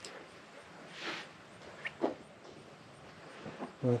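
Quiet outdoor background with a soft rustle about a second in, a brief high chirp, and a single light knock just after two seconds; the sawmill is not running.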